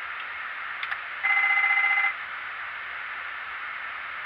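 Boeing 777 flight-deck fire warning bell ringing rapidly for about a second as the fire detection test runs, over a steady hiss of cockpit air. A faint click comes just before the bell.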